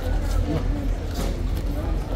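Background chatter of people talking in a crowd, over a steady low rumble.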